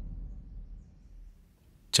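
The fading tail of a low dramatic boom from the film's soundtrack, dying away to near silence about a second and a half in.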